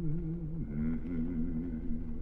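A man's low humming: one deep, wavering tune that glides down briefly about halfway through and fades near the end.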